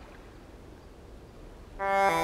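Faint low rumble and hiss of outdoor ambience, like light wind. Near the end, music comes in suddenly with held chords, much louder than the ambience.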